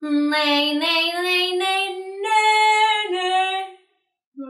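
A woman's unaccompanied singing voice demonstrating a nasal twang sound softened by lowering the larynx. The sung line climbs step by step for about two seconds, holds its top note, then steps down and fades just before the end.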